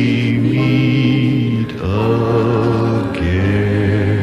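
A slow hymn sung by a choir in long held notes, the chord changing twice.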